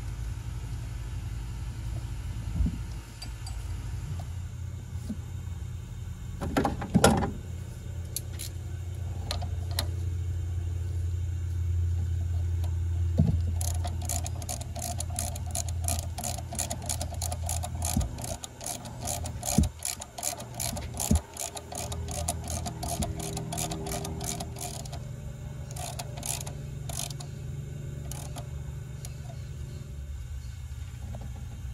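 Hand tools on a valve spring compressor bolted to the engine head: a few sharp metal clanks, the loudest about seven seconds in, then a fast, even run of ratchet-like clicks, about four a second, for roughly ten seconds as the compressor's bolt is turned. A steady low hum lies underneath throughout.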